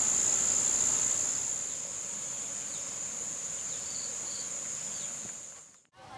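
Insects trilling in one steady high-pitched tone over soft rural background noise, with two faint short chirps about four seconds in. The trill grows softer after about two seconds and fades to silence near the end.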